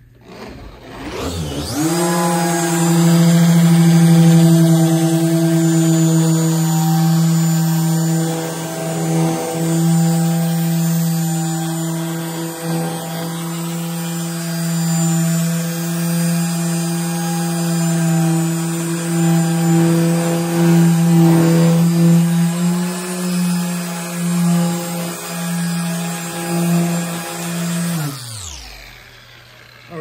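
RUPES LHR15 Mark III random orbital polisher spinning up about a second in, then running steadily with a humming motor tone while cutting compound on a foam pad across car paint to remove scratches; the tone swells a little in loudness as the pressure on the tool changes, and the motor winds down near the end.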